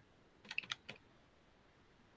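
A few faint key clicks in quick succession, four or five within about half a second, starting about half a second in.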